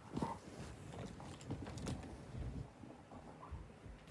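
Faint handling noise from a phone being moved about: scattered light knocks and rustling over a low rumble.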